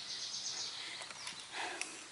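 A songbird singing a rapid, high trill that falls slightly in pitch and fades out a little over a second in. Near the end there is a soft rustle and a single click.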